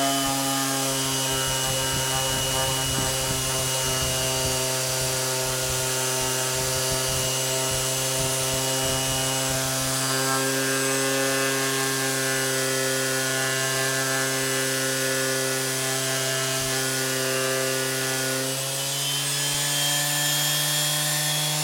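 Electric random orbital sander running steadily with its round pad on a wooden panel edge: a steady motor hum over a rubbing sound of abrasive on wood. The motor note shifts slightly near the end.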